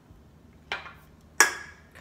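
Two sharp knocks of drinkware on a kitchen counter, a lighter one and then a much louder one with a short ring, as beer is handled for tasting.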